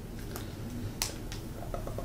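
Quiet room tone with a few faint, sharp clicks, the clearest about a second in.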